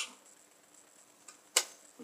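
A single sharp click about one and a half seconds in, with a faint tick just before it, as a wooden drill stand with a drilled brass plate is handled; otherwise quiet room tone.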